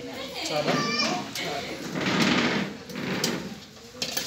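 Several people talking indistinctly in a room, including a high-pitched voice, with a noisier, rougher stretch about two seconds in.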